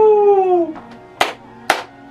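A long, drawn-out vocal call that falls slightly in pitch, followed by sharp hand claps about half a second apart.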